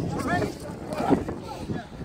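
A few brief, faint shouted voices over a steady low rumble of wind on the microphone.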